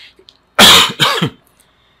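A man coughing twice in quick succession, about half a second in, loud and close to the microphone.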